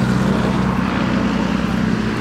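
An engine running steadily with a constant low hum and no change in pitch.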